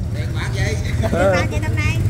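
Small motorbike engine running steadily at low speed, a continuous low hum under voices.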